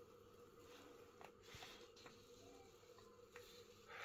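Near silence: room tone, with a few faint ticks.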